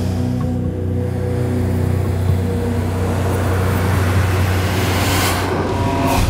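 Suspense music score: a steady low drone with held notes, and a rushing swell that builds over the last few seconds to a peak at the end.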